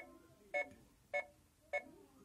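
Oregon Scientific Star Wars Clone Wars children's learning laptop beeping four times, evenly about half a second apart. Each short electronic beep comes as another asteroid appears on its LCD screen in the counting game.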